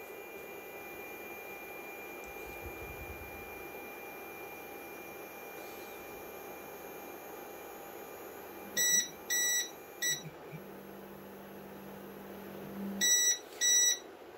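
A resin 3D printer's Z-axis stepper motor lowering the build platform to its home position, a faint steady hum with a thin high whine. About nine seconds in, the printer's buzzer beeps three times in quick succession, a low steady tone follows, and two more beeps come near the end.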